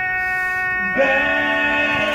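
Male barbershop quartet singing a cappella in close harmony: a held chord, then a new chord struck about a second in.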